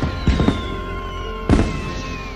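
Fireworks bursting: sharp bangs about a third of a second in, at half a second, and again at a second and a half, over film score music with a falling whistle.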